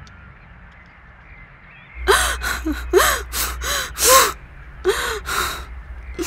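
A woman's voice moaning in pain or distress: a run of short, breathy, rising-and-falling moans, about two a second, beginning about two seconds in after a quiet start.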